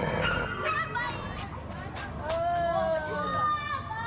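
Children's voices calling out, with high drawn-out cries in the second half.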